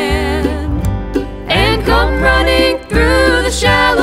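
Acoustic bluegrass gospel band playing a passage without words: a wavering lead melody over a steady bass line.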